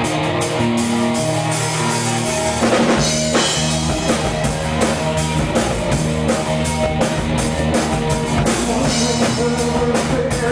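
Live rock band playing: electric guitar with drums keeping a steady beat, the full drum kit coming in hard with a crash about three seconds in.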